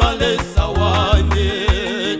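Gospel song recording by a church choir: a steady beat of bass notes and percussion, with a wavering melody line over it.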